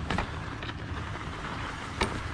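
Skis sliding slowly over packed snow: a steady hiss, with a light click near the start.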